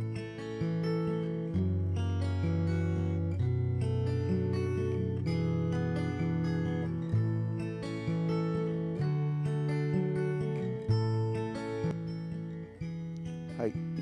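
A recorded acoustic guitar part playing a chord progression, heard through the W.A Production Imprint transient shaper plugin, which has cut its harsh, nail-like upper treble sharply.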